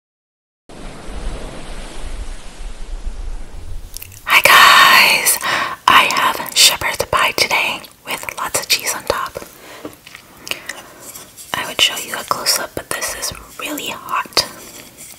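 A woman whispering close to the microphone, mixed with chewing and wet mouth sounds from eating cheesy shepherd's pie. A steady low rumble and hiss comes first, and the whispering and mouth sounds start about four seconds in.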